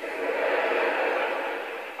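Live audience laughing at a stand-up comedian's punchline: a steady wash of crowd laughter that eases off slightly near the end.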